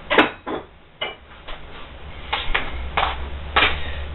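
Fostoria "American" pressed-glass cups and dishes knocking and clinking as they are handled and set down, about six knocks, one with a brief glassy ring about a second in.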